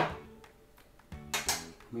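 A metal teaspoon clinking faintly against a tray and paper while baking powder is tipped out, a few small clicks in a quiet pause between words.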